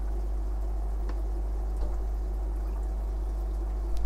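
Steady trickling and bubbling of aquarium water over a constant low hum, with a couple of faint clicks.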